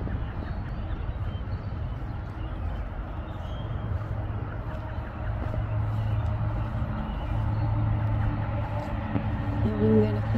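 A steady low engine hum in the background, growing a little louder in the second half.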